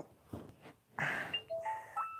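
A Samsung Galaxy J7 Sky Pro smartphone's chime: a quick rising run of short electronic tones, starting about a second and a half in.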